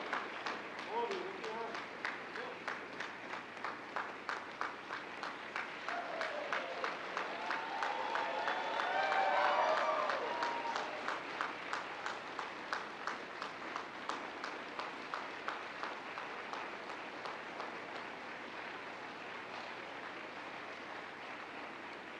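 Audience applauding, with distinct claps coming evenly, a few a second. Whoops and cheers rise over the clapping about a third of the way in, and the applause thins out toward the end.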